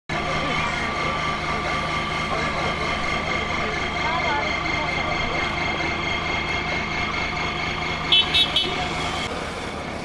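A steady engine hum with voices in the background, then a vehicle horn toots three times in quick succession a little after eight seconds in.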